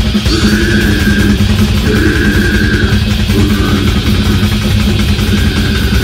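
Live metal band playing loud and dense: distorted electric guitar and bass over drums.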